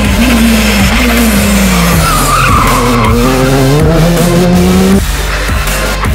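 Skoda Fabia R5 rally car's 1.6-litre turbocharged four-cylinder at full load. Its engine note falls, then climbs again through the gears, with a brief tyre squeal about two seconds in. The engine sound cuts off suddenly near the end, leaving backing music.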